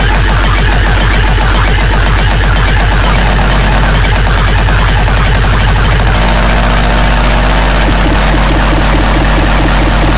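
Loud, heavily distorted industrial hardcore electronic music: a dense, driving beat over very heavy deep bass, starting suddenly. The bass pattern changes about six seconds in and again near eight seconds.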